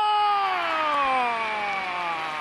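A man's long, unbroken exclamation, an 'oooh' that starts high and slides slowly down in pitch. It is a football commentator's reaction to a shot at goal.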